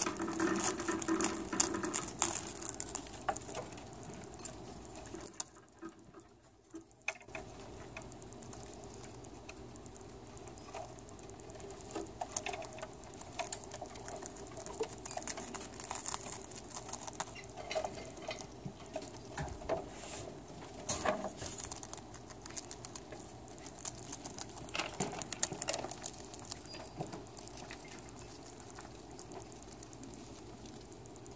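Pet rats nibbling and chewing crisp dried seaweed: a run of small crunches and crackles, with a brief near-silent pause about six seconds in.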